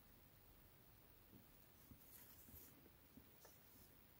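Near silence: room tone, with a few faint soft handling sounds of a plastic kit sprue being turned in the hand about midway.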